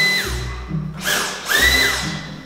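Cordless stick vacuum whining at full speed, then released so its motor winds down, and triggered again about a second and a half in, spinning up to the same steady high whine. Background music plays underneath.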